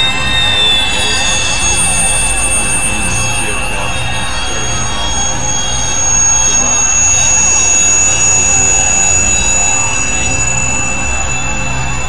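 Loud, steady synthesizer drone in an experimental industrial-noise piece: a dense noisy wash over a low rumble, with several high held tones on top that hardly change.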